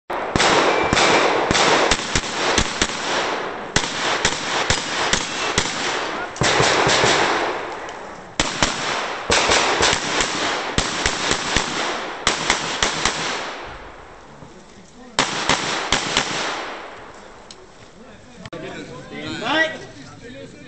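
Tanfoglio Stock II semi-automatic pistol fired in rapid strings of several shots a second, in four bursts separated by short pauses as the shooter moves between firing positions. Each string rings on with echo. Near the end a voice is heard instead of shots.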